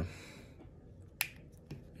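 A single sharp plastic click about a second in, from the parts of a Transformers Legacy Evolution Deluxe Class Crashbar action figure being snapped into place during transformation, followed by a few faint clicks near the end.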